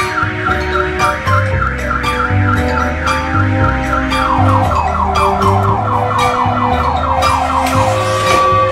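Electronic car-alarm-style siren warbling quickly, then about halfway through switching to a faster, wider up-and-down sweep that stops near the end, over background music with a steady bass line.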